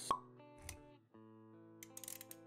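Pop-up sound effects of an animated intro over soft background music with held notes: a sharp pop just after the start is the loudest sound, then a softer thump about midway and a few quick clicks near the end.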